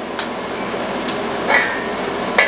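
Metal pot lid clinking against a steel pan as it is set down to smother a pan fire: a few sharp metallic clicks, the one about one and a half seconds in ringing briefly, over a steady hiss.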